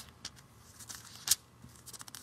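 Handling noise on the phone that is recording: faint taps and rustles, with one sharp click a little over a second in.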